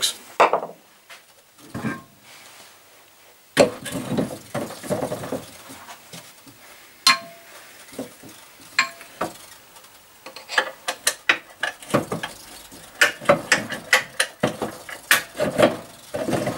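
Metal clanks and clinks as a new electric motor is lifted and wiggled into its mounting bracket on a pillar drill head, with a tapered punch through the pivot hole. There are single knocks about three and a half and seven seconds in, the second with a brief ring, then a run of quick rattling clicks in the last few seconds.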